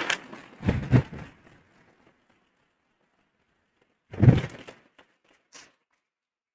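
Dull thumps and small clicks from handling of a handheld microphone: one about a second in, a louder one about four seconds in, then two faint clicks.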